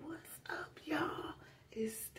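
A woman speaking quietly in short whispered phrases, with no other sound.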